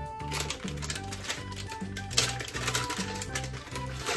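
Frozen mixed berries rattling out of a plastic bag and clattering into glass jars, an uneven run of small clicks and ticks, over steady background music.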